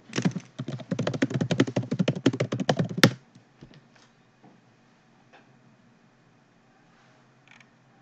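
Computer keyboard typing in a fast burst for about three seconds, ending in one sharper keystroke, then a few faint scattered clicks.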